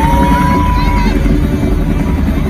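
Helicopter rotor and engine sound effect played loud through a concert sound system, a steady low rumble with a fast chop. Over it a voice from the crowd rises into a held cry that stops after about a second.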